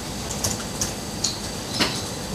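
Laptop keys clicking a few times, about four separate taps in two seconds, the last one near the end the loudest, over a steady low room hum.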